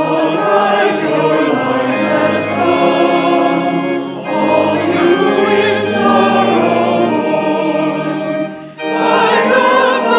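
Congregation and choir singing a hymn together with organ accompaniment. The phrases break briefly about four seconds in and again near nine seconds.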